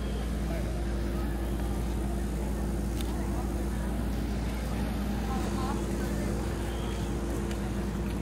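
Outdoor city ambience: a steady low mechanical hum with a constant rumble beneath it, and scattered voices of people around in the background.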